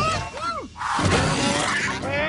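Cartoon slapstick sound effects: a shattering crash with quick swooping up-and-down tones, followed about a second in by background music.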